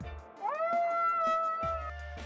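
A young wolf howling over background music: one long high cry that rises and then holds steady for more than a second, with a beat beneath it.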